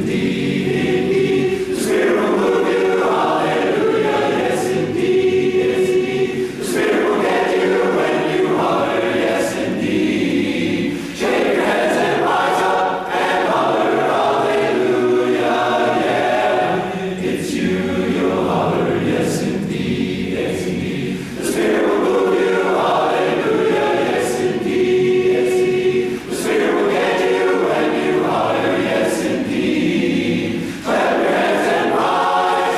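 Large a cappella barbershop chorus singing in close four-part harmony, in phrases with short breaths between them.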